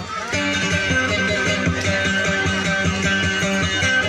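Acoustic guitar playing a quick, repeating plucked melody over a steady bass figure, as accompaniment for dayunday.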